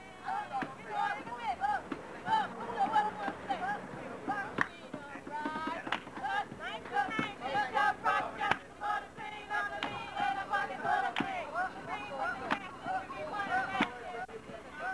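Excited, high-pitched voices of several women talking and shouting over one another, too jumbled for any words to be made out, with a few irregular sharp smacks cutting through.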